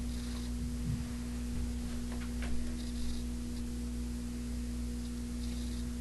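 Steady electrical hum, with a few faint soft clicks.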